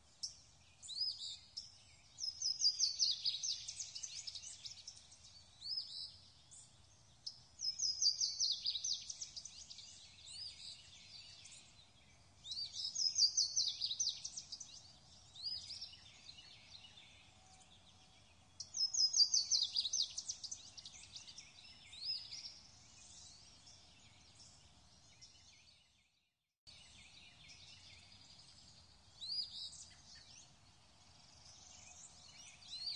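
Songbird singing: a loud trilled phrase comes four times, about every five to six seconds, with shorter chirps between, over a faint steady hiss. The sound cuts out for a moment about four seconds before the end.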